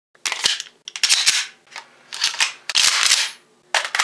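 Guns being handled: a polymer-frame pistol and an AK-pattern rifle having their actions worked, giving about five loud metallic clacks, each with a short scraping rattle.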